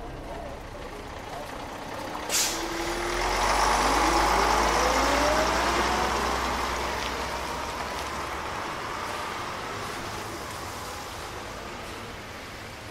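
A large road vehicle: a short, sharp air hiss about two seconds in, then its engine rising in pitch and swelling, loudest a few seconds later, then slowly fading as it moves off.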